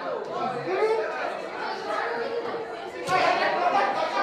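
Indistinct chatter of many students talking at once in a cafeteria, growing louder about three seconds in.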